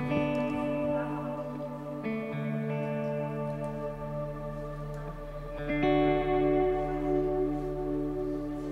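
Electric guitar through an effects pedalboard playing slow, sustained chords washed in echo. The chord changes at the start, again about two seconds in, and once more near six seconds in.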